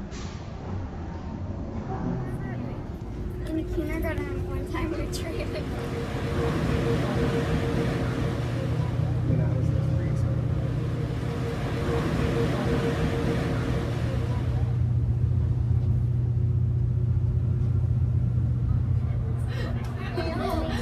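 Steady low drone of a car ferry's engines under way, with the rush of water in its wake, growing louder a few seconds in. Passengers' voices are heard underneath.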